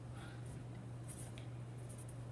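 Pencil writing on lined paper: faint, light scratching of the graphite as digits are written, over a steady low hum.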